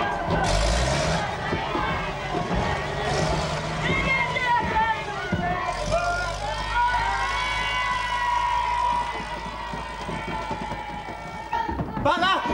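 Double-decker bus engine running as the bus drives, under a crowd of children's voices shouting and singing, with three short hisses about half a second, three seconds and six seconds in.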